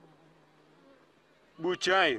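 A quiet pause with only a faint, steady low hum, which fades out about a second in. Then a voice starts speaking dubbed dialogue, loudly, near the end.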